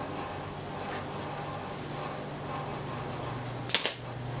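Microwave oven transformer driving about 2000 volts AC into a plasma panel's sustain electrodes: a steady low electrical hum under load with high-voltage arcing at the panel's glass edge, and a sharp crackling snap of the arc near the end.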